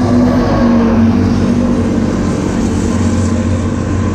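Carburetted Suzuki Raider 150's single-cylinder four-stroke engine idling steadily.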